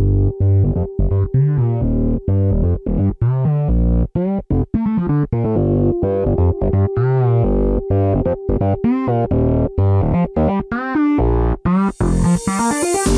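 Complextro electronic music: chopped synthesizer chords that cut off and restart in quick stutters, with short pitch-bending synth notes over a steady held tone.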